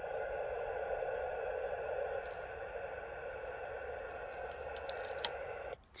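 Steady band-limited hiss from an FT-817 transceiver's receiver between overs, with a few faint steady tones in it. Just before the end the hiss dips suddenly as the distant station keys up.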